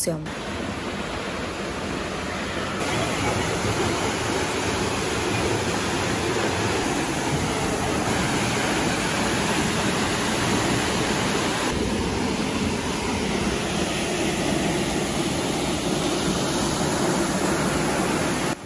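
Steady rushing of a tall waterfall, Catarata del Toro, plunging into its pool. It grows a little louder over the first few seconds, then holds.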